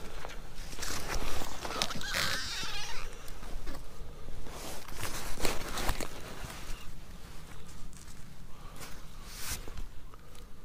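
Irregular rustling and scuffing of heavy winter gloves and clothing as a just-caught bluegill is landed and handled on snow-covered ice, with a few sharp clicks about halfway through and again near the end.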